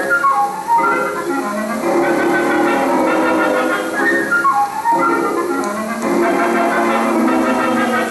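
Orchestral music from an old film's soundtrack, with quick downward runs twice, about half a second in and again near the middle.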